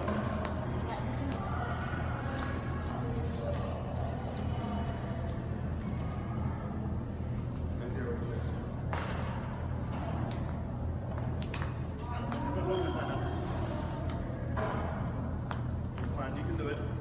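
Steady low hum of a large gym hall, with faint voices and several sharp taps scattered through.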